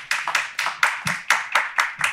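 A small audience applauding: a run of distinct hand claps, several a second, at a steady level.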